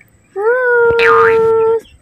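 A high voice holding one long, steady note for about a second and a half. A brief swooping whistle-like sound dips and rises in the middle of it.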